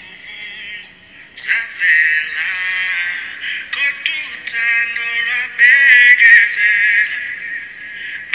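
Song with a singing voice played back from an Instagram reel through a phone's small speaker, sounding thin with little low end; it drops out briefly about a second in, then carries on.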